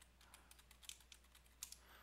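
Faint keystrokes on a computer keyboard as a password is typed: a quick, uneven run of key taps, the last and loudest a little past one and a half seconds in.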